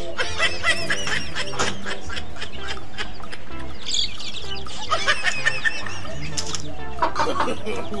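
A hen clucking, among many short high calls that bend quickly up and down, over background music.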